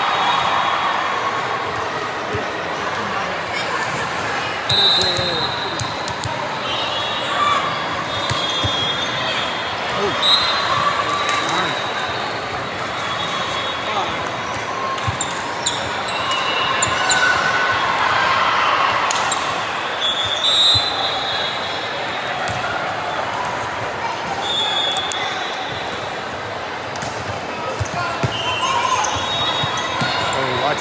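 Indoor volleyball play on a hardwood court: a volleyball being hit and bouncing, sneakers squeaking in short high chirps, and voices of players and spectators, all echoing in a large gym.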